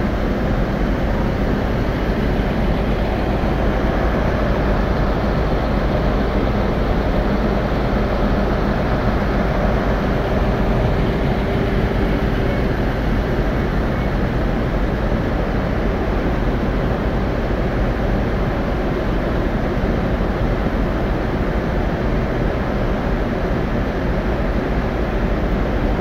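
Diesel multiple unit engines idling at a station platform: a steady, unbroken drone with a low rumble and a constant engine hum.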